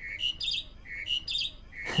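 A songbird's mating-season song: a fast phrase of a lower chirp followed by quicker, higher chirps, repeating about once a second.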